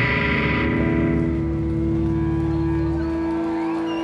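Electric guitar and bass ringing out on a rock band's final chord through the amplifiers: steady held tones that slowly fade, with the low bass dropping out about three and a half seconds in.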